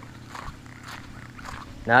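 Faint footsteps on asphalt, a few soft steps over low outdoor background noise, with a spoken word starting near the end.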